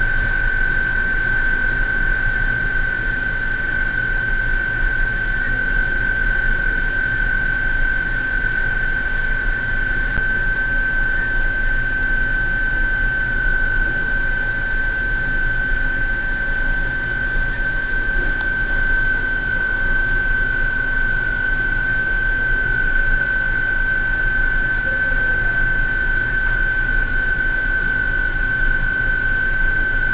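Offshore platform crane machinery running steadily: a low hum under a constant high-pitched whine, unchanging throughout.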